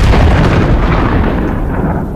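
Loud explosion-like sound effect dropped into a radio broadcast. It starts abruptly and dies away over about two seconds, leaving a low rumble.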